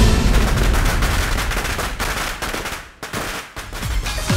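A string of firecrackers going off in a fast, dense crackle that dies away about three seconds in, followed by a short second burst near the end.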